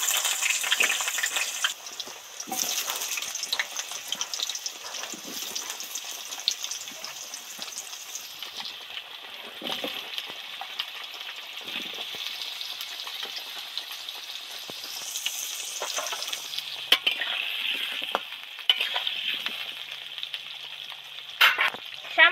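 Potato chunks deep-frying in hot oil in a kadai: a steady sizzle, loudest in the first two seconds just after they go into the oil, then settling, with a couple of sharp clicks late on.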